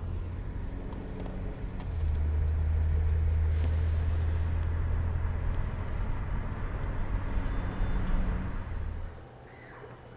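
Inside the cabin of a moving car: a steady low rumble of road and engine noise, which cuts off about nine seconds in.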